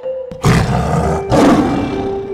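A tiger roar sound effect, given twice in quick succession: two loud, rough roars, the first about half a second in and the second just after the middle.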